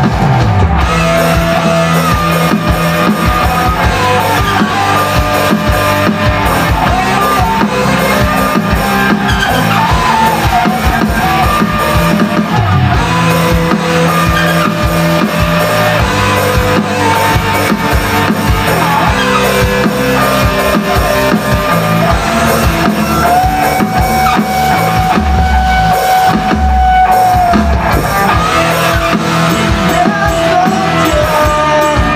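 Live rock band playing an instrumental passage with no singing: electric guitars over a drum kit and bass, with one long held lead note late in the passage.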